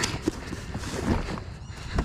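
Cardboard box being handled, with a few light hollow knocks and rustling.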